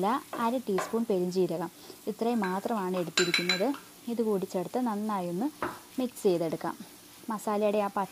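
Vegetables sizzling in a frying pan as they are stirred with a wooden spatula, with a brief clink about three seconds in as spice powder is tipped from a bowl. A woman's voice talks over it and is the loudest sound.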